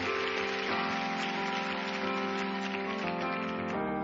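Piano and acoustic guitar playing the slow introduction of a pop ballad in held chords, which change about a second in and again near the end. A crackling hiss lies over the music and thins out near the end.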